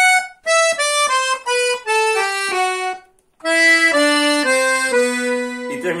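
Red Todeschini piano accordion playing fast single notes on the keyboard, stepping down the scale. After a short break about three seconds in, a second, lower run steps down again: the closing phrase of the song's accordion part.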